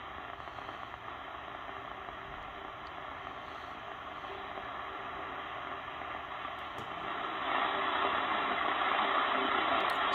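Static and hiss from a Malahit-clone DSP SDR's speaker as it is tuned across the 49 m shortwave band, with no clear station coming through. The hiss grows louder about seven seconds in.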